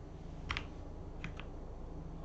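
Computer mouse and keyboard clicks: a quick pair about half a second in, then two more close together just past a second, over a low steady hum.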